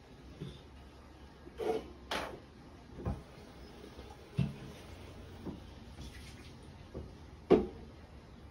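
A series of soft, irregular knocks and thuds, about eight of them, over a low steady hum; the loudest knock comes near the end.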